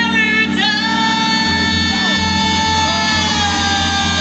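Live pop music over a concert PA: a woman singing one long held note into the microphone, gliding slightly down, over the band, with a pulsing bass beat coming in about a second and a half in.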